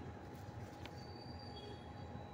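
Faint steady low rumble with a thin steady hum over it, faint high whines about a second in and a single light tick just before them.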